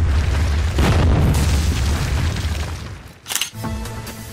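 Cinematic impact sound effect of a wall smashing apart: a deep low rumble with a crash about a second in, dying away by about three seconds. A brief sharp hit follows, then a short musical sting begins near the end.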